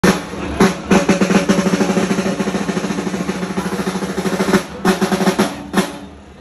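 Festival drums played in a fast roll of about eight strokes a second, with heavy accented beats near the start and a few separate heavy beats near the end. The drumming cuts off suddenly at the end.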